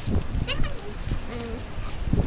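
Kishu puppies giving short, wavering whimpering cries as an adult Kishu dog pins and disciplines them, over low scuffling noise.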